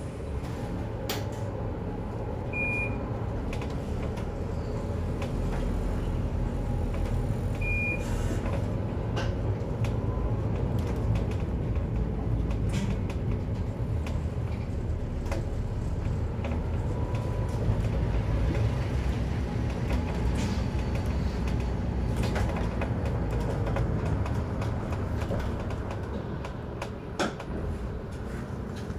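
Mercedes-Benz Citaro G C2 articulated bus heard from inside at the front, its engine running and road noise steady as it pulls away and drives. Two short high beeps sound in the first eight seconds, with a few light clicks.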